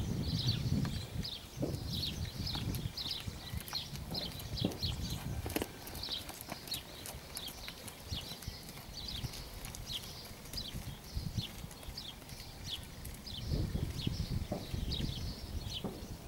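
Horse's hooves trotting on a sand arena surface, a run of dull thuds in a steady beat, heavier at the start and again near the end. A string of short, high chirps repeats above them throughout.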